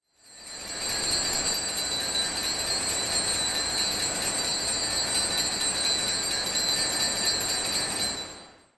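Altar bells rung continuously for the elevation of the chalice at the consecration: a steady, shimmering high ringing that starts suddenly and fades out at the end.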